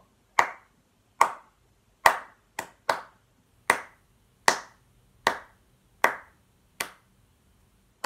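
Hands clapping out the rhythm of a line of music, about ten claps in all: mostly evenly spaced a little under a second apart, with a quicker pair of claps about two and a half seconds in.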